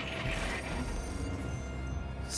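Mechanical-sounding sci-fi sound effects from a holographic control system, with a burst of hiss about half a second in, over a steady low drone of score music. The sounds signal that the system has locked out the override.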